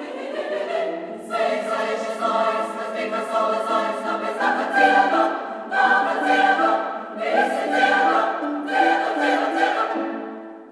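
Women's choir singing full-voiced in several parts, in Latvian, over a steadily repeated lower note figure, swelling loudly several times.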